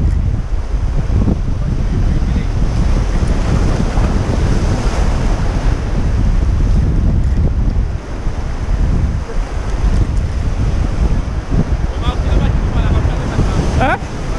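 Sea surf washing and breaking against shoreline rocks, with strong wind buffeting the microphone throughout.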